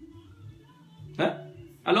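A short pause in a man's talk: a faint steady background under a brief vocal sound about a second in, then his speech resumes near the end.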